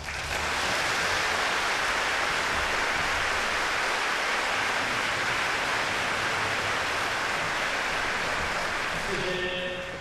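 Concert audience applauding at the close of a piece: dense, steady clapping that breaks out at once and fades near the end.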